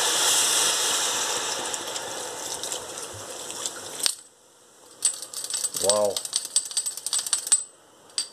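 Beer poured from a bottle into a hot pot of fried vegetables to deglaze them, hissing and sizzling loudly as it hits the pan. The hiss fades over about four seconds and cuts off suddenly. It is followed by a crackling fizz of scattered small pops.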